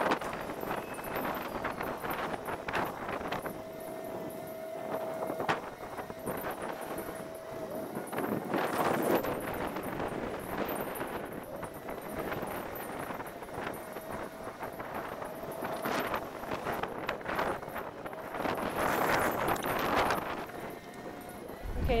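Outdoor ambience: uneven wind noise with scattered small knocks and rustles.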